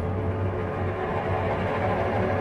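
Symphony orchestra playing a contemporary symphonic poem: a dark, dense passage of held tones over a steady low rumble.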